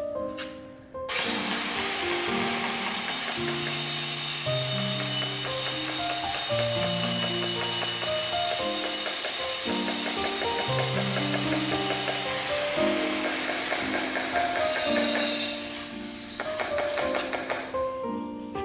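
Background music with a plucked, piano-like melody, over a power tool that starts with a high whine about a second in and runs steadily. It winds down with a falling whine between about thirteen and fifteen seconds in.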